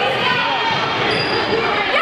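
Basketball being dribbled on a hardwood gym floor, with sneakers squeaking in short chirps and spectators' voices in the background.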